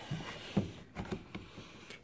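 Faint handling noise of the camera being carried into the van's cab: a low hiss with a few light knocks and rustles.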